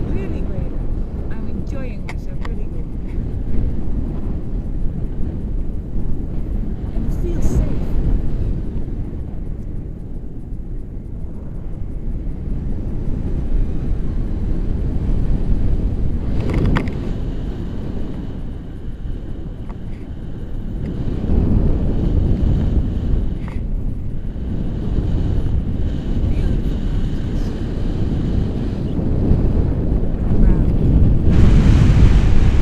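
Wind buffeting the microphone of a camera carried in flight under a tandem paraglider: a steady low rumble that swells and eases every few seconds.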